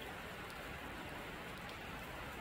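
Steady rain falling on a sheet metal gazebo roof: an even hiss with a few faint drop ticks.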